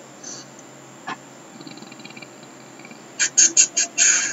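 A bird chirping: a quick run of about five short, high-pitched chirps near the end, after fainter high ticks and a single click earlier.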